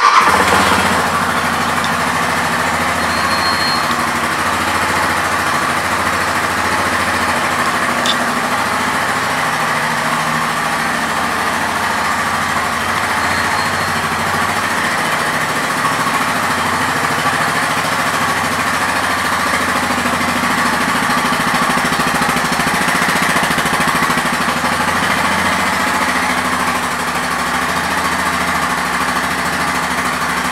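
2014 Yamaha Grizzly 550 ATV's single-cylinder four-stroke engine, just started: a brief flare as it catches, then a steady idle.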